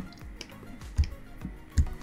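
Quiet background music with a few sharp computer clicks from working the sculpting program, the clearest about a second in and another near the end.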